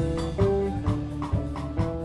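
Live band music: an electric bass playing a melodic line of separate plucked notes over a drum kit keeping a steady beat.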